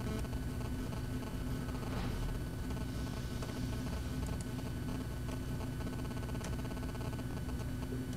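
Steady low hum of room and computer noise, with a few faint, scattered computer mouse clicks.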